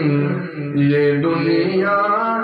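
A man singing a naat, an Urdu devotional hymn, in long held notes that bend in pitch, with a brief break about half a second in.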